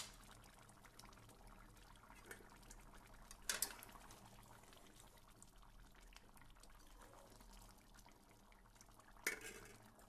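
A metal utensil clattering against a cooking pot twice, about three and a half seconds in and again near the end, with a faint clink around two seconds in; quiet in between.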